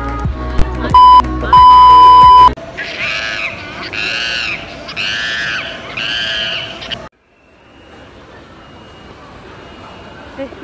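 An edited-in soundtrack. Background music with a loud single-pitch electronic beep, first short and then held for about a second, stops abruptly. Four high, rising-and-falling calls follow, each just under a second long. Then the sound cuts off suddenly to a faint steady background hum.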